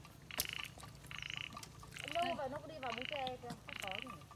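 A frog calling over and over, short buzzy calls repeated evenly a little more than once a second, five in all. A single sharp click comes just after the start, and women's voices join in the second half.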